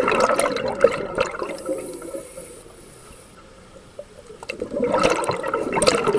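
Scuba regulator exhaust heard underwater: exhaled breath bubbles out in a loud gurgling burst that fades over about two and a half seconds. A quieter gap with a faint hiss follows while the diver breathes in, then bubbling starts again about four and a half seconds in.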